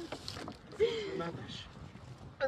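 A short, falling, tearful cry, like a sob, from a distressed person, over faint rustling and clicks.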